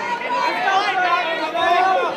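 A crowd of fight spectators shouting and yelling over one another, several voices at once and none of them clear.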